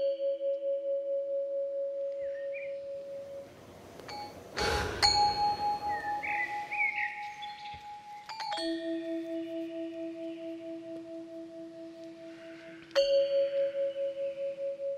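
Film-score bell chimes: each struck tone rings on with a slow wavering pulse, and a new chime is struck about every four seconds. A short rushing swell comes about four and a half seconds in.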